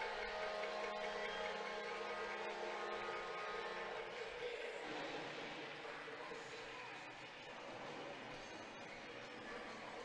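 Faint ice-hockey arena sound after a goal: a steady held tone for about the first four seconds, then a low, even arena din.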